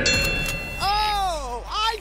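A short, bright bell-like chime rings as the challenge begins. About a second in, a cartoon character's drawn-out vocal exclamation follows, rising and then falling in pitch.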